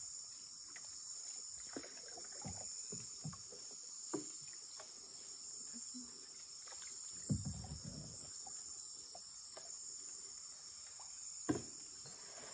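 A steady, high-pitched insect chorus, with a few knocks and a low thump from paddles against wooden canoes, the sharpest knock near the end.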